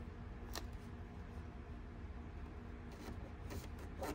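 Faint handling sounds of fingers pressing paper transfer tape onto a vinyl letter overlay on a car grille, over a steady low rumble, with one sharp click about half a second in.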